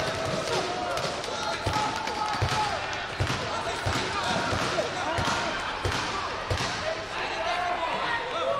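Dull thumps of bare feet on a taekwondo competition mat, coming irregularly about once or twice a second as the fighters bounce and clash. Voices shout in the background of a large hall.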